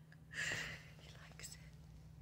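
A short, soft whisper about half a second in, then a faint click, over a steady low hum.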